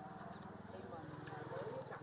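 Faint outdoor field ambience with distant, indistinct voices of people working.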